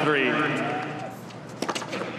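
A tennis ball bounced a few times on a hard court just before a serve, giving short, sharp knocks in the second half over a low crowd murmur.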